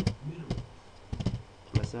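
Computer keyboard being typed on: a handful of separate keystroke clicks, a few per second, spaced unevenly.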